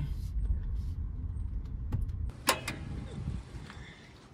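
Cabin sound of a 1999 Honda Civic's four-cylinder engine driving slowly with its headers and catalytic converters stolen, so nothing is bolted to the exhaust ports: a loud, steady low rumble. It cuts off about two seconds in, followed by a single sharp click.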